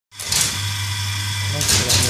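Electric motor of a soap-stamping auto punch machine running with a steady low hum. Brief rustling bursts come near the start and again near the end.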